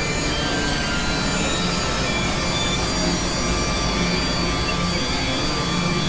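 Experimental electronic noise drone from synthesizers: a dense noisy wash at a steady level, with faint high held tones and a low hum that comes and goes.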